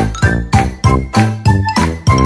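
Short musical jingle: bright ringing notes struck in an even rhythm of about three a second, each with a low note underneath.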